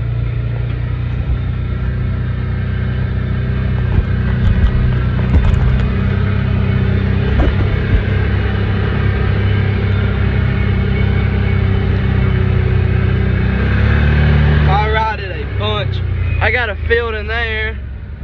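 Side-by-side UTV engine running steadily while driving along a dirt trail, with a few sharp knocks from the cab over bumps about four to five seconds in. A voice is heard near the end.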